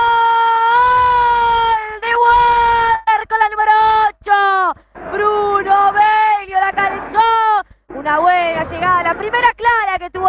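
A female radio football commentator's goal cry: a long, drawn-out "Gol!" held on one high note for about two seconds, followed by more excited high-pitched shouting.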